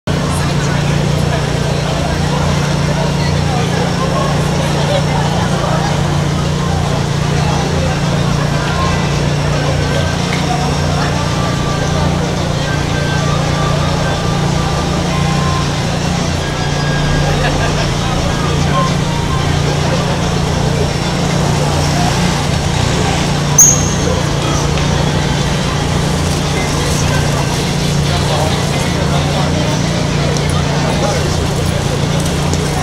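Street crowd: many indistinct voices chattering over a steady low hum, with one sharp click about three-quarters of the way through.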